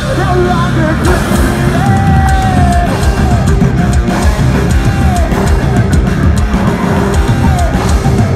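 Heavy rock band playing live: distorted electric guitars, bass and a drum kit, with a singer holding long notes over them.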